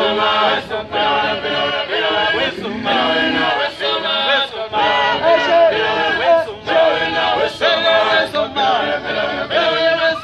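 A group of voices singing a repetitive song in chorus, in short phrases, with a sharp tick on the beat about once a second.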